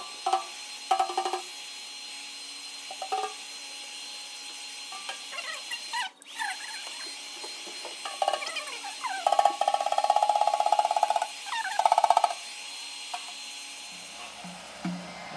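Heat gun blowing hot air over a slack tambourine skin head to shrink it back to tension, played back at four times speed. A steady high hiss runs throughout, with short chirping fragments and a louder buzzing tone from about 9 to 12 seconds in.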